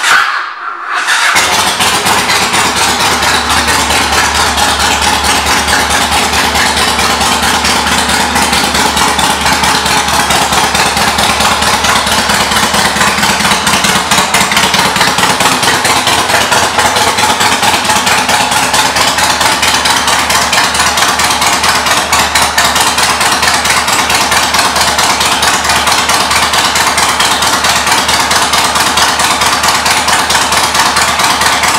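2006 Yamaha Road Star Midnight 1700's air-cooled V-twin, on aftermarket exhaust pipes, catching as it is started about a second in and then idling loudly and steadily.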